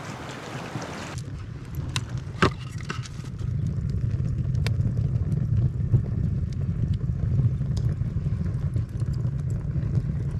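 Wood fire burning in a stone-and-clay kiln: scattered sharp crackles over a steady low rumble. About a second in, a broad hiss like wind drops away.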